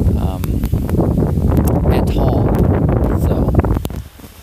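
Wind buffeting the microphone: a loud, steady low rumble that drops away suddenly at the end.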